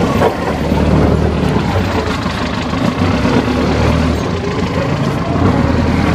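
An engine idling with a steady low hum. It is most likely the vehicle hauling the car-carrying flatbed trailer.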